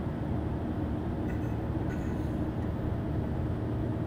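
Cabin noise of a Mercedes-Benz Sprinter van cruising on the highway: a steady, low engine drone at about 2,000 rpm mixed with road and tyre rumble.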